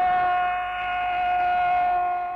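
Portuguese-language football commentator's long held goal cry, a single drawn-out 'gooool' on one steady high pitch, for the goal just scored.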